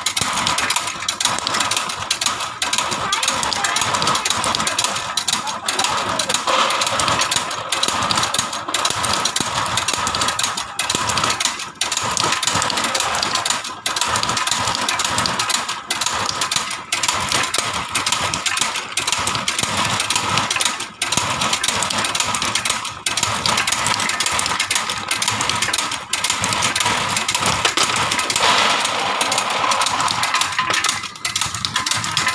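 Semi-automatic cashew cutting machine running: loud, steady mechanical noise with a short break in loudness about every two seconds.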